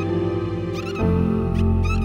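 Dolphin whistles, two short upward-gliding calls about a second apart, over slow relaxation music with sustained low chords that change about a second in.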